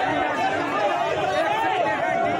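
A crowd of men shouting and talking over one another, many voices overlapping without a break.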